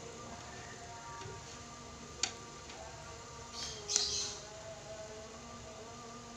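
Light handling sounds from an aluminium steamer pot as steamed stuffed tofu pieces are lifted out: one sharp tick about two seconds in and a short scraping clink about four seconds in. Faint music with steady notes sits underneath.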